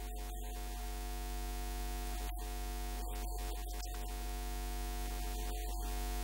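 Steady electrical mains hum from a public-address system, with a constant hiss over it.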